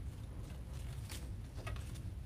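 Plastic zip tie being ratcheted through its lock, short faint rasps and ticks about a second in and again near the end, over a low steady hum.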